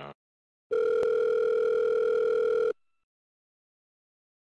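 Telephone ringback tone on the caller's line: one steady electronic ring about two seconds long, starting under a second in, while the call waits to be answered.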